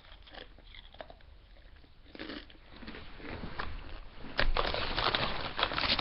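A Doritos tortilla chip being bitten and chewed, crunching: a short burst of crunches about two seconds in, then steady, louder crunching through the last second and a half.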